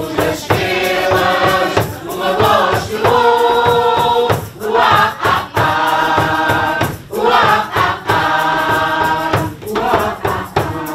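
Mixed choir of adults and children singing in phrases with short breaks between them, over a steady beat of hand percussion.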